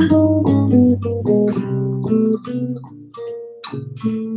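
Six-string electric bass playing a quick jazz phrase of plucked notes over a looped bass line.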